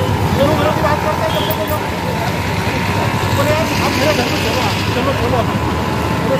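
Busy street ambience: background voices of several people talking over a steady traffic rumble.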